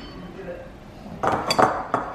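Crockery clinking and knocking, a few sharp strikes close together in the second half, as food is turned out of a container into a ceramic bowl.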